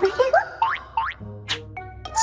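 Cartoon soundtrack: fast, high-pitched gibberish chatter dies away in the first half-second, then two quick upward-sliding boing-like effects, a sharp click, and held music notes.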